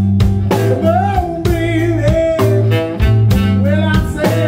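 Blues-rock band playing live on electric guitar, electric bass and drum kit, with a held lead melody that wavers in pitch over a steady beat.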